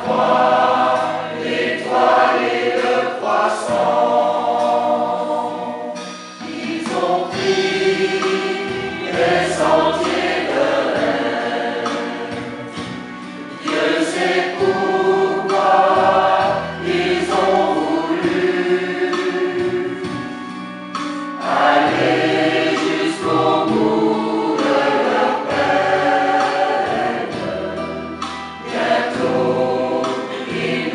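Mixed choir of men's and women's voices singing a Christmas song in harmony, in long phrases with brief dips between them, over steady low notes from a synthesizer accompaniment.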